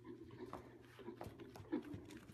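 Appaloosa stallion moving loose on the soft footing of an indoor arena: a few irregular dull hoof thuds, the loudest near the end.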